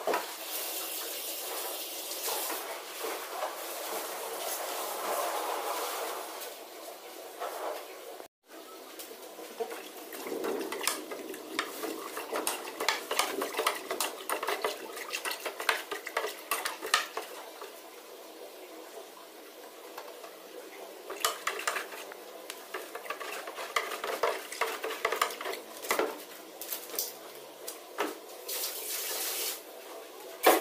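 Caustic soda solution being stirred in a plastic tub: water swishing and sloshing, with many small clinks and knocks.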